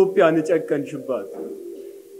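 A man speaking in short phrases, with a low steady drone running underneath.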